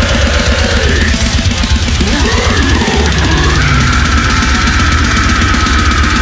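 Deathcore music: distorted guitars, bass and fast drumming, with the full band coming in right at the start and a high held note through the second half.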